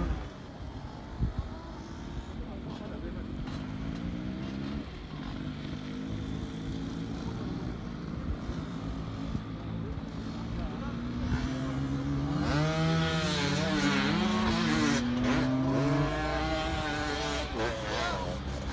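Dirt bike engines revving under load, their pitch climbing in two long runs, the second longer and louder. People's voices call out over the engines near the end.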